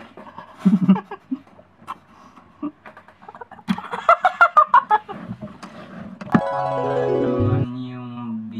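Two people biting and slurping into juicy watermelon slices, with a burst of laughing voices and wet bites a little after the middle. About six seconds in, keyboard music starts abruptly with a falling run of notes and holds on.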